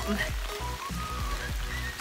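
Heavy rain falling steadily, with wind rumbling on the microphone.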